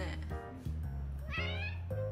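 One short cat meow, rising slightly in pitch, about one and a half seconds in, over background music with a steady bass line.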